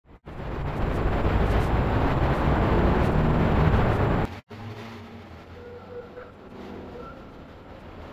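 City street traffic noise, loud and low-pitched with a wavering engine drone. About four seconds in it breaks off abruptly and gives way to a much quieter street hum with a few faint steady tones.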